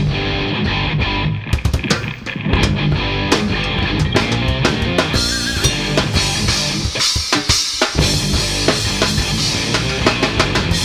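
Live rock band playing an instrumental passage without singing. Electric guitar and bass run under a drum kit, and the drums break into a run of hits about a second and a half in.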